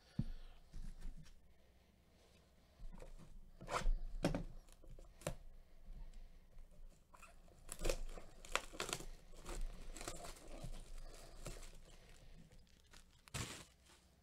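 Plastic shrink wrap being torn and crinkled off a cardboard box, in irregular bursts of crackling that start about three seconds in.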